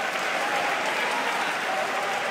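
Boxing crowd applauding, with voices calling out over the clapping, after the bell ends a round.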